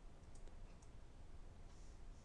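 Near-silent room tone with two faint clicks in the first second, typical of a computer mouse being clicked to advance presentation slides.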